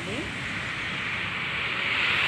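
Steady road traffic noise, a continuous wash of passing vehicles that swells slightly near the end.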